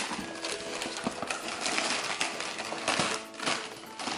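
Gift wrapping paper crinkling and tearing as a present is unwrapped by hand, in a quick, irregular run of rustles and rips.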